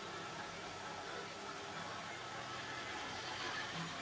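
Steady faint hiss of background noise, with no distinct sound events.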